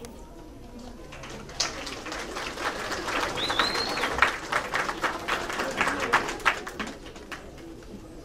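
Audience applause that starts about a second and a half in, grows, and fades out near the end. A single short high whistle cuts through it midway.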